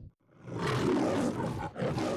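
The MGM lion roaring. The roar begins about half a second in, after a moment of silence, and pauses briefly near the end before a second roar starts.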